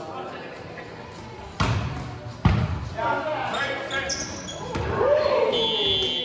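Two sharp smacks of a volleyball being struck, about a second apart, echoing in a gymnasium, followed by players shouting calls during the rally.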